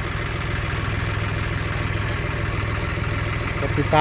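A tractor's diesel engine idling steadily, with an even low throb that does not change.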